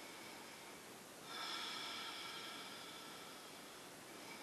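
Slow breathing through the nose with a faint whistle: one long breath begins about a second in and fades near the end.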